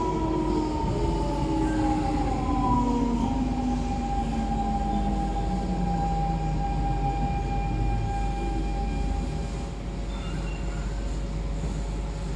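Siemens C651 train's GTO-VVVF inverter traction whine, several tones sliding steadily down in pitch as the train brakes to a stop, levelling off about nine seconds in.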